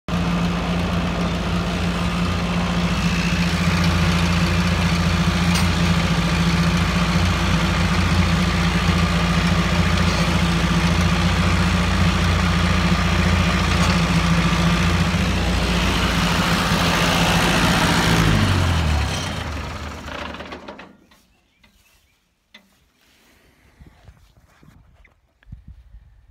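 Farm tractor engine running steadily, then shut off about eighteen seconds in, its note falling as it runs down to a stop within a couple of seconds. Afterwards only a few faint clicks.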